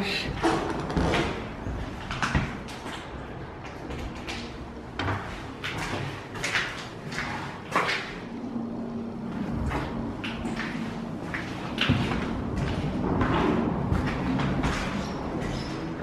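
Irregular knocks and scuffs, like footsteps and small bumps, on a bare, debris-strewn floor in an emptied house.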